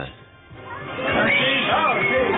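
A brief lull, then background music comes in under a woman's excited high-pitched squeal and voices celebrating a roulette win.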